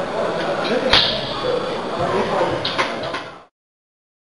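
Loaded barbell set down into the bench rack's metal hooks, a single sharp clang about a second in, followed by a few lighter metal clinks; the sound cuts off suddenly shortly before the end.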